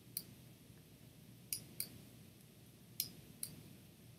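Faint computer mouse clicks, about five short clicks spread across the few seconds, some coming in quick pairs, over quiet room tone.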